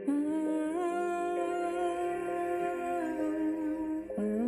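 Music: a wordless hummed vocal line holding long notes with small slides in pitch. The phrase ends just before the close and a new one begins.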